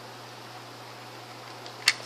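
A single sharp plastic click near the end, from LEGO pieces on a toy truck being handled, over a steady faint hum and hiss.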